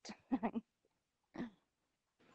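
A woman's short laugh in a few quick bursts, with one more brief laugh sound about a second and a half in.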